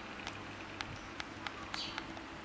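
Baby macaque sucking on a milk bottle's teat: a handful of small, sharp sucking clicks and a short, high, falling squeak near the end, over a low steady hum.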